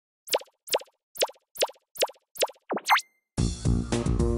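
Intro jingle: six quick plopping pops, each dropping in pitch, about two a second, then a swoop down and back up. The theme music starts about three and a half seconds in.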